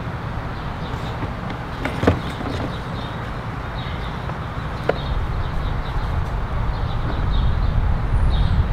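Steady low outdoor background rumble, with two faint knocks about two and five seconds in.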